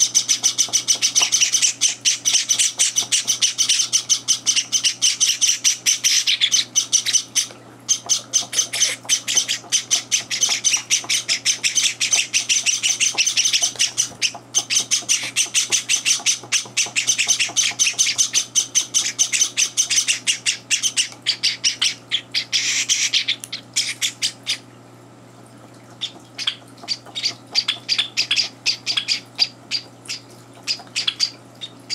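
Java sparrow chicks giving begging calls at feeding time: a fast, continuous run of short high chirps. The run breaks off briefly a few times, stops for about two seconds near the end, then comes back as sparser chirps.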